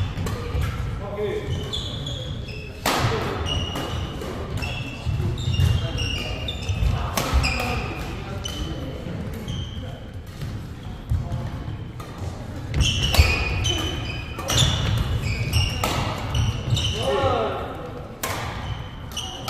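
Badminton doubles rally on a wooden indoor court: several sharp racket strikes on the shuttlecock among footfalls and many short high-pitched shoe squeaks, echoing in a large hall.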